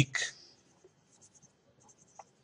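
Pen scratching on paper in faint short strokes while writing by hand.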